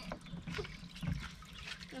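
Faint trickling and light splashing of water in a shallow plastic water table as a child's hand gropes through it.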